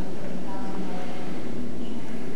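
Indistinct speech, mostly about half a second to a second in, over a steady hiss and hum of room noise.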